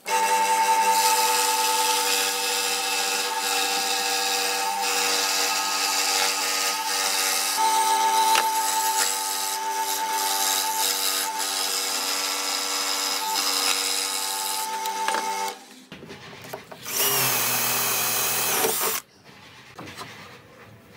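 Ryobi scroll saw running and cutting out a circle from a hardwood board, a steady buzzing whine for about fifteen seconds. After a short lull, a second, brighter two-second burst of machine noise, then it stops.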